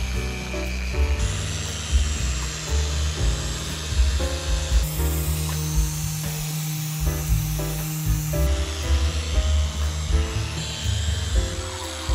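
Background music with a steady beat. The beat drops out for a few seconds in the middle under a rising hiss, then comes back.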